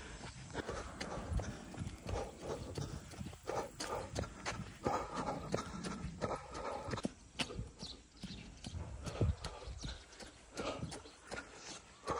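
A runner's footsteps on an asphalt road: a steady, even rhythm of footfalls.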